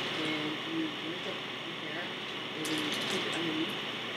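A woman talking quietly and indistinctly, in two short stretches, over a steady hiss from a faulty recording.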